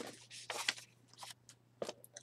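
Paper and cardstock rustling and crinkling in a string of short bursts as scrapbook sheets are handled and shuffled.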